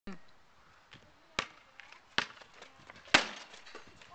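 A basketball bouncing on a hard court: about six sharp bounces at uneven intervals, the loudest about three seconds in.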